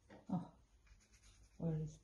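A woman's voice: a short vocal sound about a third of a second in, then a spoken word near the end.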